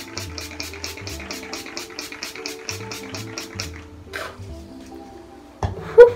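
Pump-mist facial spray bottle (Mario Badescu) spritzed rapidly over and over, about five quick hissing sprays a second for roughly four seconds, over soft background music. A single thump near the end.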